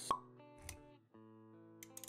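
Intro sound effects over soft background music: a sharp pop just after the start, then a short low thud a little over half a second in, with sustained music notes underneath.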